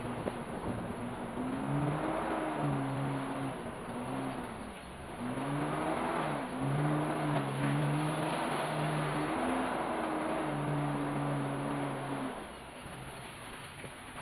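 A 4x4's engine heard from inside the cab as it drives a rough dirt track, its pitch rising and falling as the throttle is worked, then easing off about twelve seconds in.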